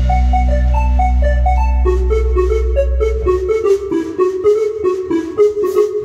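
A band's closing bars: a held low bass note rings and dies away about halfway through, while an electronic keyboard plays a run of single notes that turns quicker and busier in the second half.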